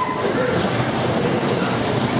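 Dodgem cars running over the arena's metal floor: a steady, loud rumble and clatter like a train, with a brief rising squeal right at the start.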